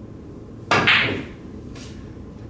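A pool shot on a billiard table: a sharp clack of the cue striking the cue ball and the balls colliding, about two-thirds of a second in, ringing briefly. A fainter click follows about a second later as the balls run on.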